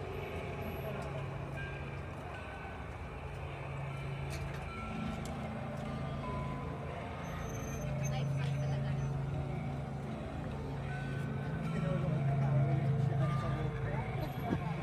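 A low, wavering rumble that swells about five seconds in and again near the end, with short held high tones at changing pitches sounding over it.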